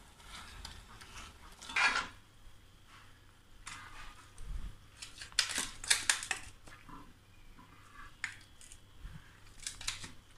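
Metal spatula scraping and clinking against a metal pan and a steel plate as thick jackfruit halwa is stirred and then pressed flat. The strokes come irregularly, with the busiest, loudest run of scrapes a little past the middle.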